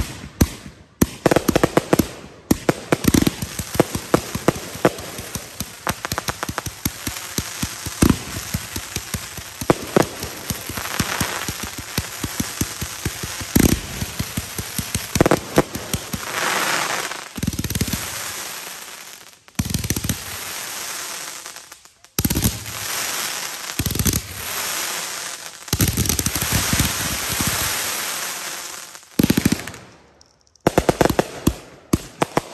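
Consumer firework cake firing: rapid strings of sharp shots and crackling reports with stretches of hissing, broken by a few brief pauses in the second half.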